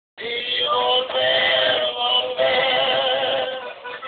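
A live Mexican trio of acoustic guitars and male voices performing a slow ranchera song, with long held notes. The sound drops out for a split second right at the start.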